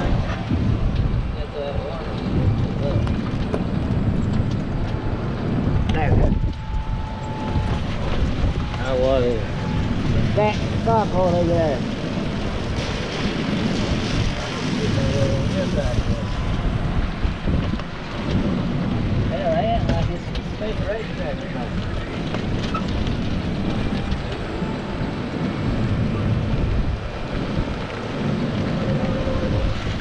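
Steady wind buffeting the microphone over the rumble of a golf cart rolling along pavement, with short snatches of voices around the middle.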